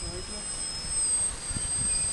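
Thin high whine of an RC delta wing's motor and propeller in flight, its pitch dipping slightly about halfway through, over a low rumbling noise.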